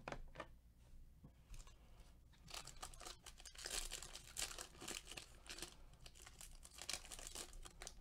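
Foil wrapper of a Topps Chrome baseball card pack crinkling and tearing open in gloved hands. It is faint, with a few light handling clicks at first and crackling from about two and a half seconds in.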